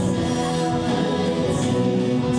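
A live band's singers holding long notes together in harmony, cut in abruptly as the music starts.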